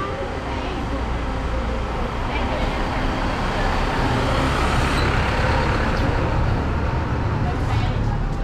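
A city minibus driving past on the street, its engine rumble and road noise building up and loudest in the middle, over general street traffic.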